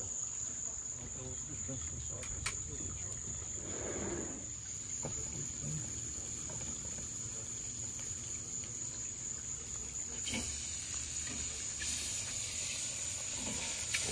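Insects singing outdoors: one steady, unbroken high-pitched drone.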